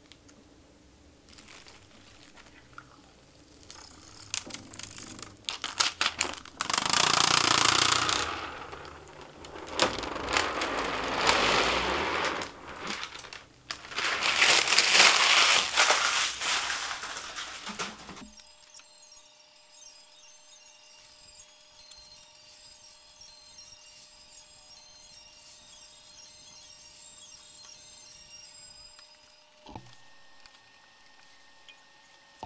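Close-up handling noises: crinkling plastic wrap and a hand rubbing across a 3D printer's glass print bed, in several loud bursts that cut off abruptly partway through. After that comes a much quieter stretch holding only a faint steady tone.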